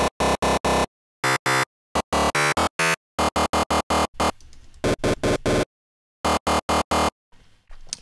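Distorted synth lead sample built from an additive-synthesis waveform with its fundamental removed, played as quick runs of short repeated notes, about four or five a second, with brief silent gaps between the runs.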